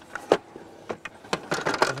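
A folding camping chair with a metal frame being unfolded by hand, its frame giving several sharp clicks and clacks as it opens out and settles into place.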